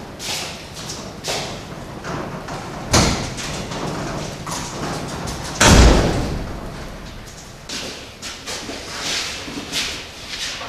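Two heavy thumps in a metal-walled shop, one about three seconds in and a louder one near six seconds with a short echoing tail, amid lighter knocks and rustling.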